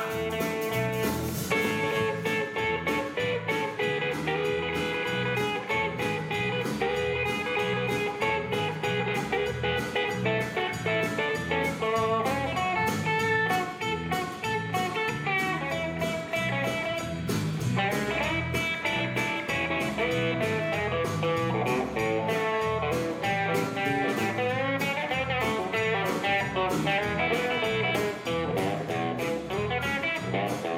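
Live country band playing an instrumental passage: electric guitar lead over strummed acoustic guitar, bass and drums keeping a steady beat.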